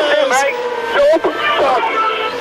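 A man's excited shouting and cheering, carried over the steady drone of a single-seater race car's engine.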